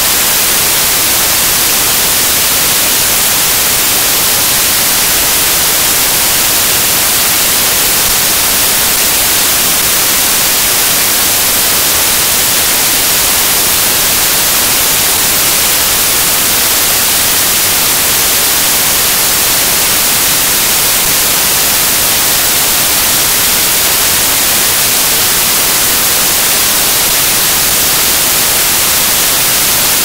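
Loud, steady static hiss, brightest in the treble, with no change at all.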